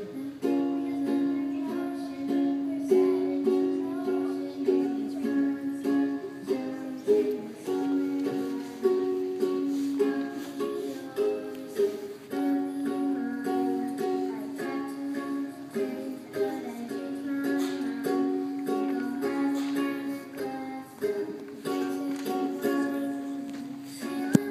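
Ukulele strummed in chords, accompanying a pop song.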